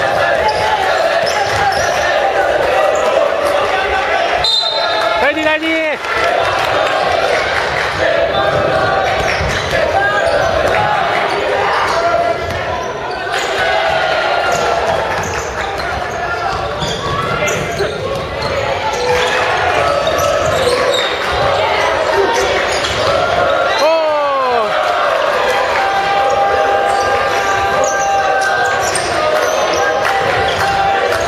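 Basketball game on a hardwood gym court: the ball bouncing on the floor amid players' and bench voices and shouts, with sharp sneaker squeaks on the floor a few seconds in and again past the middle.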